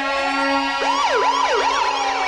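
A siren sound in a rap track's intro: a wail that rises and holds, then about a second in breaks into quick up-and-down sweeps, about three a second, over a steady low tone.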